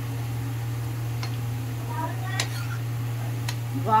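A steady low hum, with a few light clicks of a steel ladle against a kadhai as a curry is stirred.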